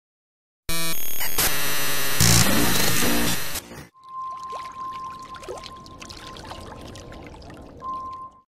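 Intro-logo music and sound effects: a loud, dense burst of music and noise for about three seconds, then a quieter stretch of crackle under a steady high tone.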